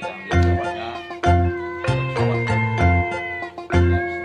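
Background music with a steady beat and sustained instrumental tones, with a domestic cat meowing over it near the start.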